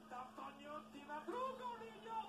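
Faint voice of a TV sports commentator coming from a television's speaker in a small room, with a steady low hum underneath.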